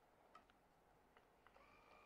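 Near silence, with a few faint clicks from handling a handheld plastic electric scalp massager. A faint steady whine begins just after a click near the end.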